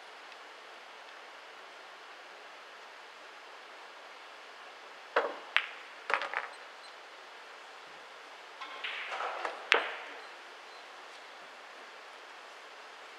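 Pool balls clicking during a shot: a few sharp clacks of the cue tip and of ball hitting ball, then a scatter of softer knocks and one more sharp clack, over a faint steady hiss.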